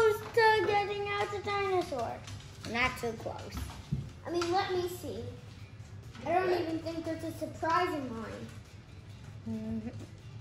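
A child's voice making drawn-out wordless sounds on and off, with long held notes in the first two seconds and again about six to eight seconds in. A small knock about four seconds in.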